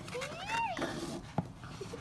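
A brief high-pitched vocal call that rises and then falls in pitch, followed by a single sharp click as the cardboard presentation box is handled.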